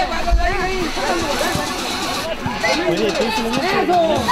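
Several voices calling out and talking over one another, children's voices among them, at a fairly steady level.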